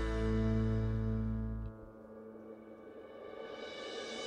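Soft instrumental background music: a held chord rings on, its low notes stopping about halfway through, leaving quieter sustained tones.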